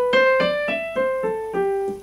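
Digital keyboard on a piano voice playing a short melody one note at a time, each note struck and decaying, about four notes a second. The line climbs slightly and then steps down, ending on a lower held note.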